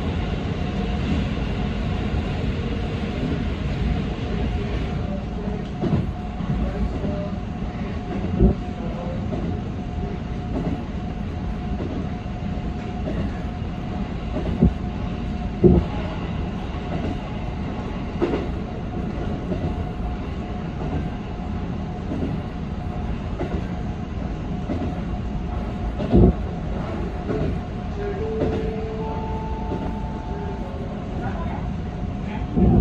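JR 313-series electric train running, heard from inside the driver's cab: a steady rumble of wheels on rail with a few sharp knocks now and then. The higher hiss of the tunnel falls away about five seconds in as the train comes out into the open, and near the end two steady tones set in.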